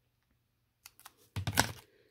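Hard plastic magnetic card holders clicking and clacking against each other as they are handled: a few light clicks a little under a second in, then a quick cluster of clacks.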